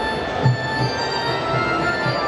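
Electronic keyboard music played live: held chords over a steady low beat.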